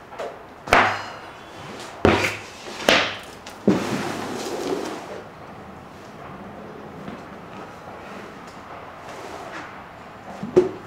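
A large gym floor mat being flipped and dropped onto a garage floor: four slapping thuds in the first four seconds, the last followed by a second or so of the mat scraping as it is dragged into place, then only faint handling.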